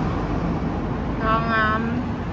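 Steady low rumble of city street traffic, with a woman's voice drawing out one word about a second in.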